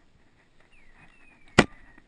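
A single sharp shotgun shot about one and a half seconds in, by far the loudest sound, with a faint high tone falling in pitch just before and through it.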